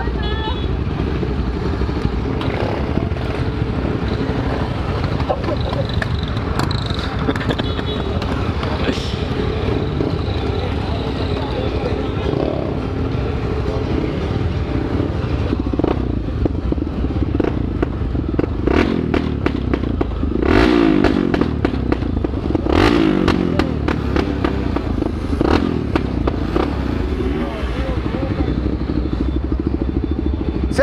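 Several motorcycle engines running close by, a steady rumble, with a couple of revs rising and falling about two-thirds of the way through.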